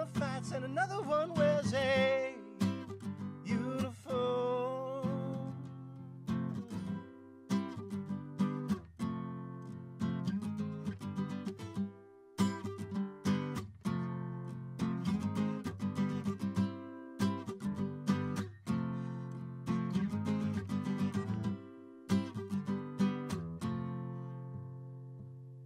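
Acoustic guitar strummed in a steady rhythm, with a sung line trailing off during the first few seconds and an instrumental strummed passage after it.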